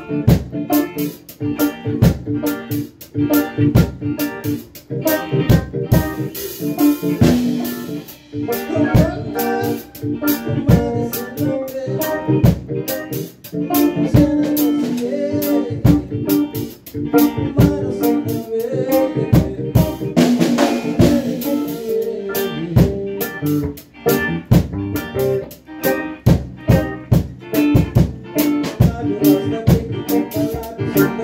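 A reggae band playing live in a small room: drum kit, electric guitar and keyboard, with steady regular drum hits over sustained chords.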